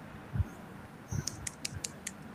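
Faint scattered clicks and soft knocks over a quiet line, several in quick succession from about a second in.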